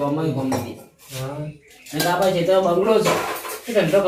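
A man's loud, drawn-out voice, not plain talk, over clattering metal pots and utensils.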